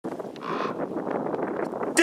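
Steady outdoor background noise, a mid-pitched rush with no clear single source, and a brief higher hiss about half a second in.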